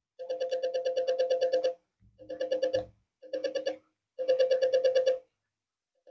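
A TV remote's infrared signal, picked up by a small solar panel and played through an audio amplifier's speaker, as a rapid pulsed buzzing tone. It comes in four separate bursts as buttons are pressed, the longest about a second and a half.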